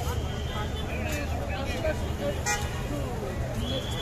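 Busy street ambience: a steady rumble of traffic under the chatter of a crowd, with a vehicle horn sounding briefly near the start and again near the end.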